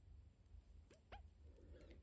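Near silence, with two faint, quick squeaks a little after a second in, as synthetic silk thread is drawn through the needle lace stitch.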